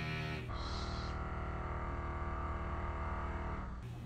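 Construction machinery droning next door, a steady pitched hum with a deep low tone that eases off near the end.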